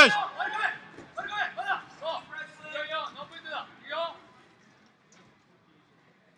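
Men's voices shouting a series of short calls from beside the wrestling mat, the calls stopping about four seconds in.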